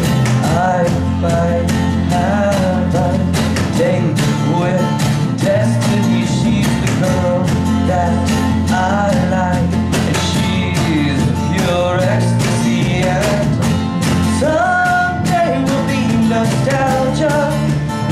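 A small band playing live: a man singing a melody over strummed acoustic guitar, bass guitar and a cajon beating a steady rhythm.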